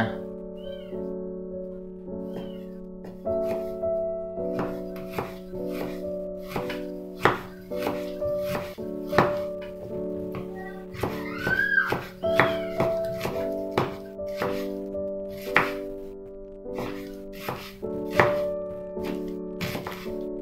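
Kitchen knife chopping shallots on a wooden cutting board: sharp, irregular knocks, about one or two a second, over background music with held instrumental notes.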